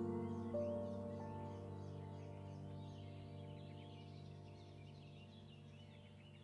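Soft new-age background music of held piano-like notes that slowly fade away, with faint bird chirps high above the notes.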